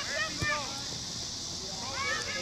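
Distant voices shouting across a soccer field for the first half second or so, with a single thump about half a second in, then a quiet stretch over a steady high hiss.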